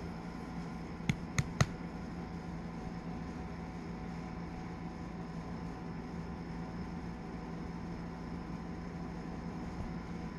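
Steady low background hum, with three short sharp clicks in quick succession a little over a second in.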